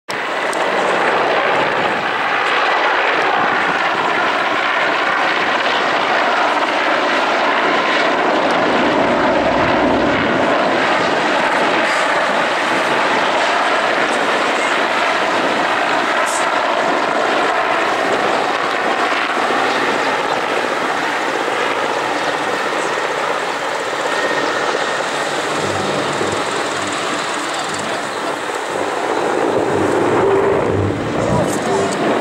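Mil Mi-8-type twin-turbine helicopter flying past low overhead: steady turbine and rotor noise that eases slightly near the end.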